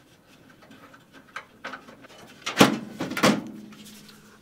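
Thumb screws being undone with small clicks, then the Phanteks NV9 case's top panel lifted free with two clunks about two and a half and three seconds in.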